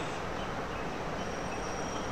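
Steady low hiss of room noise picked up by the speaker's microphone, with a faint thin high tone in the second half.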